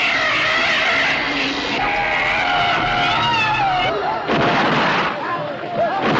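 Film-trailer sound effects: wavering, high shrieking cries over a dense, loud din, with a sudden noisy blast a little past four seconds in.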